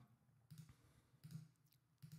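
Near silence, with a few faint clicks of a computer mouse about half a second and a second and a quarter in.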